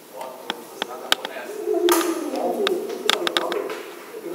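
A man's voice over the stage PA making a drawn-out sound that slides down in pitch, among several sharp, irregularly spaced hand claps.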